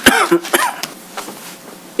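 A person coughs once, sharply, right at the start, with a short throaty tail, then only quiet room tone.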